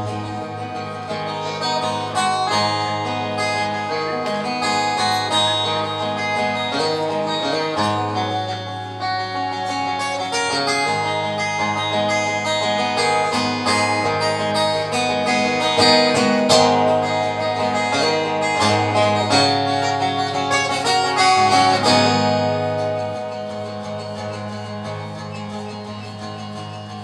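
Steel-string acoustic guitar played solo in an instrumental break of a folk song, with ringing chords and bass notes. It gets softer over the last few seconds.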